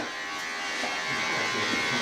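Electric hair clippers buzzing steadily.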